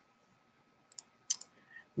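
Quiet room tone, then two short computer mouse clicks about a second in.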